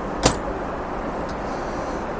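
A cabinet door latching shut with a single sharp click, over the steady cabin noise of a Boeing 777-300ER in flight.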